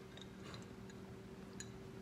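Faint sounds of sipping an iced drink through a straw, with a few small scattered ticks.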